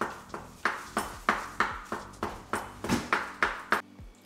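A chef's knife chopping raw tuna on a bamboo cutting board, a steady run of knocks about three a second as the blade strikes the board.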